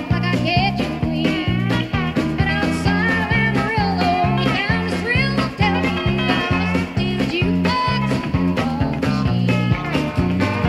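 Live country band playing at full volume: a steady, driving bass and drum beat, with bending melody lines riding above it.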